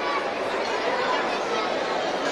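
Crowd chatter: many people talking over one another at a steady level, with no single voice standing out.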